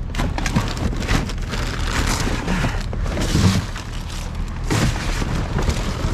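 Rubbish being rummaged through by gloved hands inside a dumpster: cardboard, plastic bags and bottles crackling and rustling, with many small knocks, over a steady low hum.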